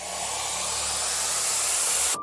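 Whoosh-style noise riser sound effect for an animated logo sting: a rush of noise that grows steadily louder.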